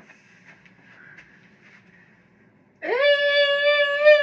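A woman's voice holding one long, high wordless note, which starts nearly three seconds in and wavers slightly at the end. Before it there are only a few faint clicks.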